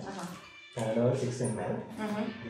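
A toddler's short, whiny fussing cry over adult talk, starting a little under a second in.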